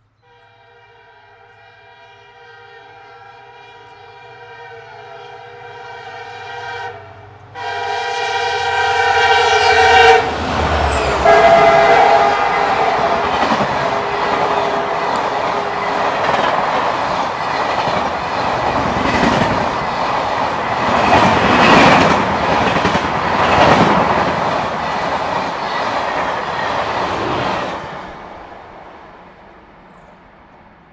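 WDP4 diesel locomotive (EMD GT46PAC) sounding its twin-tone long-hood horn in two long blasts, growing louder as it approaches; the second blast is the louder and breaks off about ten seconds in. Then the loud rush and wheel clatter of the passenger coaches passing at speed, fading away a couple of seconds before the end.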